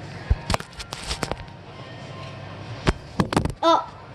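Background music under a run of sharp knocks and bumps, with a short cry that bends up and down near the end.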